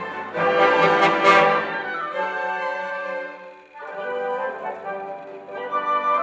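Symphony orchestra playing, with strings, horns and woodwinds. The music swells loudest about a second in, thins briefly a little before four seconds, then builds again.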